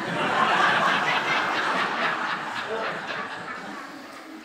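An audience laughing, many voices together, loudest in the first couple of seconds and then dying away.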